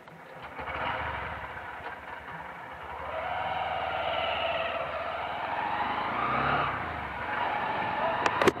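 Motorcycle engine running as the bike pulls away from a stop and gathers speed, its note rising and easing a few times, with road and wind noise.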